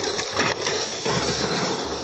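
Loud, continuous rushing noise of a car speeding along a highway shoulder and striking a tow truck's lowered ramp, picked up by a police body-camera microphone; the noise is loudest about half a second in.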